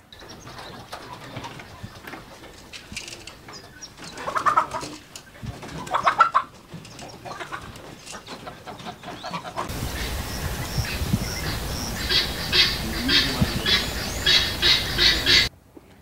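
Farm poultry calling: a couple of calls about four and six seconds in, then a quick run of short, sharp calls repeated several times a second over the last few seconds.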